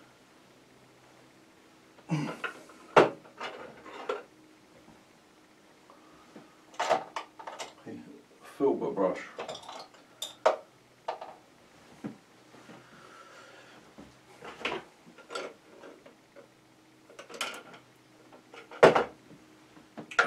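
Irregular light clicks, taps and knocks of painting tools being handled as a filbert brush is picked out and put to work: brush handles and tools tapping against the palette and containers. One knock a few seconds in and one near the end are the sharpest.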